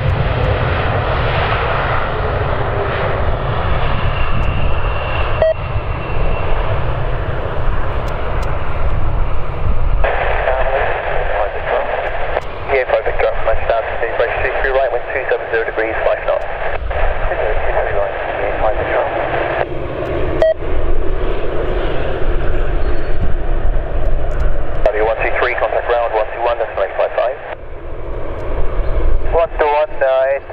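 Boeing 787 Dreamliner's jet engines running at low power as it taxis, a steady low rumble. Air traffic control voices come over a radio scanner on top of it, in a long stretch through the middle and briefly again near the end.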